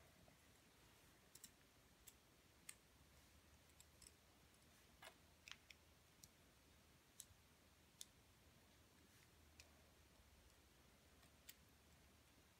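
Faint, irregular clicks and taps of plastic pen parts being handled and pushed together, about a dozen scattered over the stretch.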